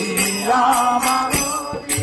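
A man singing a devotional kirtan song in long, bending notes, keeping time on small metal hand cymbals (kartals) struck in a steady rhythm.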